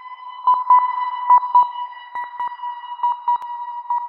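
Synthesized intro sound effect: a single steady electronic tone like a sonar ping, held throughout and broken by quick, irregular blips and clicks. It fades away just after the end.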